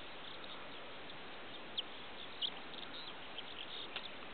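Faint outdoor ambience: a steady hiss with a few short, high bird chirps scattered through it, the clearest two a little before and after the middle.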